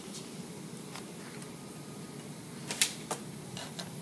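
A few short, sharp plastic-and-metal clicks and taps, the loudest near three seconds in, as a USB plug is fumbled into a port on the back of an iMac, over a steady low room hum.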